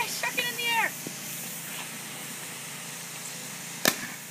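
A shaken water bottle bursting with one sharp bang near the end.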